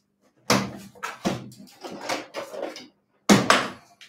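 Rummaging: a string of knocks and clatters as objects are moved about while searching, ending in two sharp knocks close together near the end.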